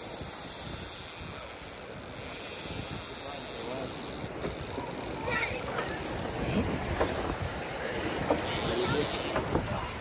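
Steady wind and surf noise, with faint voices in the background.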